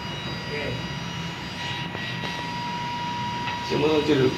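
A level-crossing warning tone sounding as one steady high electronic note, over a steady low rumble.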